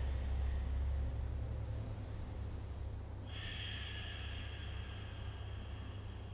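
A woman breathing slowly over a steady low hum. A soft, even breath sound comes in about halfway through and lasts a few seconds.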